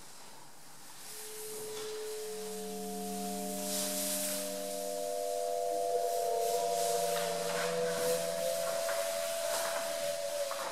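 Several steady pure tones held and layered, coming in one after another and ringing together, the highest wavering slightly in pitch near the end. Under them, charcoal scratching and rubbing on paper as marks are drawn.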